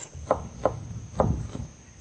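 Large kitchen knife chopping on a wooden cutting board: three sharp knocks in the first second and a bit.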